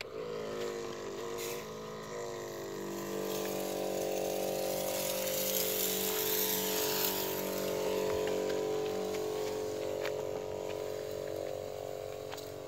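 Battery-powered knapsack sprayer pump switched on. It starts suddenly and its pitch shifts over the first couple of seconds, then runs with a steady hum, while the lance nozzle adds a hiss of spray that grows louder midway.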